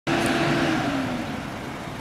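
A road vehicle driving past, its engine note sliding down in pitch as it grows quieter.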